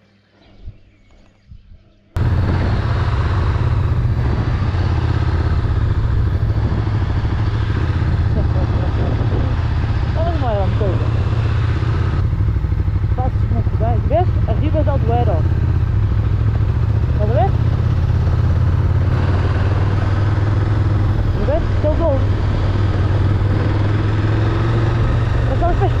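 KTM Super Duke motorcycle's V-twin engine running steadily at road speed, heard from a handlebar-mounted camera, with a steady rush of riding noise. It cuts in suddenly about two seconds in, after a near-quiet start.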